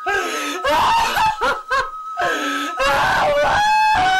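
A woman wailing and sobbing in grief over a dead man, in short broken cries that run into one long drawn-out wail near the end.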